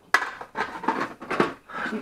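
A sharp knock, then irregular clatter of objects being handled on a workbench, mixed with indistinct speech.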